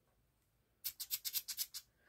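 A quick run of about eight short, sharp rattling clicks, lasting just under a second, starting about a second in.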